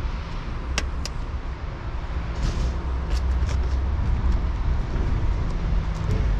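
A car's door mirror being pushed and wiggled by hand on its mount, giving two sharp plastic clicks about a second in, then a short scrape and a few lighter taps. A steady low rumble runs underneath.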